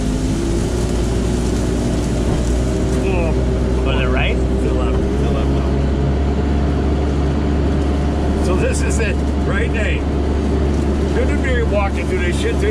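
Sherp all-terrain vehicle's diesel engine running at a steady pitch as it pushes through tall cattails, heard from inside the cab. Brief voices break in a few times over the engine.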